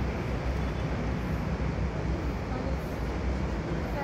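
Wind buffeting the phone's microphone, making a steady, rumbling noise with no breaks.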